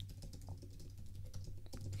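Computer keyboard typing: a quick, irregular run of keystrokes, fairly faint.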